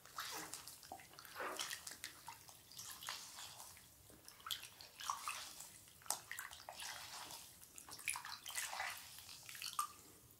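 Wet facial sponges being rinsed and squeezed out in a bowl of water: quiet, irregular splashing and trickling.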